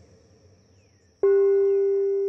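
A singing bowl struck once a little after a second in, ringing with a strong steady low tone and a slowly wavering overtone above it as it starts to fade. Before the strike there is only a faint hush.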